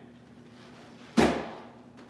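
A snowboard training board landing on a low jib box feature: one sharp, loud thud about a second in that rings out briefly.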